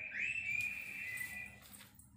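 A high, steady whistling tone that slides up at its start and holds for about a second and a half, with a fainter second tone just below it.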